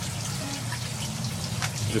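Water trickling in an IBC tote aquaponics system, over a steady low hum.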